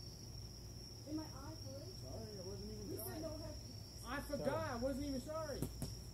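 Crickets chirring in one steady high continuous note, with people's voices talking and calling out from about a second in, loudest near the end.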